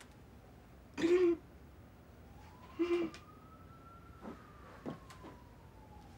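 Two short, breathy vocal sounds from a woman, about two seconds apart, over a faint music tone that slowly rises and falls. A few soft clicks near the end.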